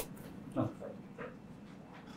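A person's voice: a quiet 'oh' about half a second in, followed by two short, faint vocal sounds.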